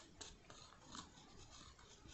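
Near silence, broken by a few faint, brief scratches and ticks from the plastic nozzle of a UV resin bottle being worked over a small metal charm to spread the resin.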